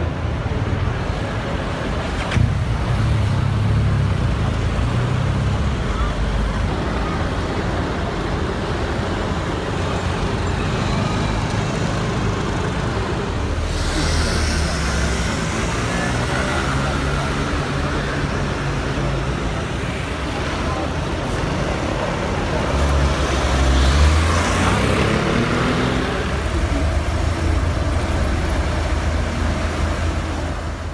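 Outdoor street noise: a steady rumble of road traffic with the scattered voices of a gathered crowd, swelling slightly a little before the end.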